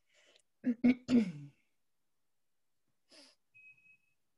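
A woman clearing her throat, three short voiced coughs about a second in, then a faint breath and a brief thin high-pitched tone near the end.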